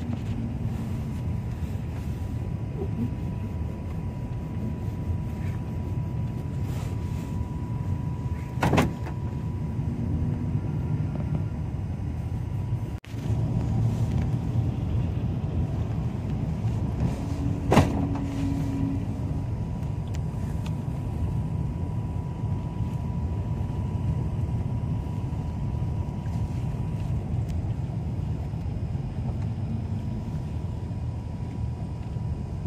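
Cabin noise inside an Iveco Daily route minibus on the move: steady engine and road rumble with a faint, steady high whine. Two sharp knocks, about nine seconds in and again near eighteen seconds.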